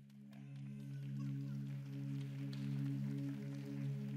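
Soft, slow instrumental music from a live band: low held chord notes that fade in over the first second, then go on steadily as the introduction to a worship song.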